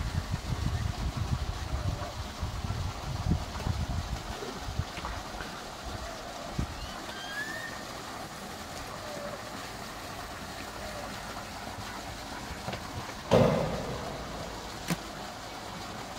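Outdoor ambience by a cattle pen: a low, uneven wind rumble on the microphone, strongest in the first few seconds, then a steady low background with a faint bird chirp. A short, louder sound stands out about thirteen seconds in.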